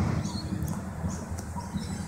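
Outdoor street ambience: a continuous, uneven low rumble with faint, scattered high bird chirps over it.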